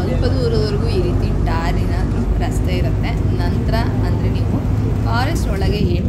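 Safari minibus engine running steadily as the bus drives along, heard from inside the cabin as a constant low hum. Passengers' voices talk over it.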